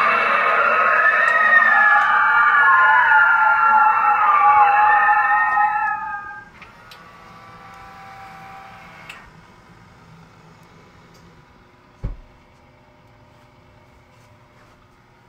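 Halloween reaper animatronic's eerie sound effect: several wavering, gliding wails sounding together for about six seconds before fading out. Fainter steady tones follow, then a single low thump near the end.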